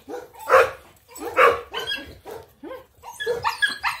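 A dog barking in a quick series of about eight short barks, the loudest about half a second and a second and a half in.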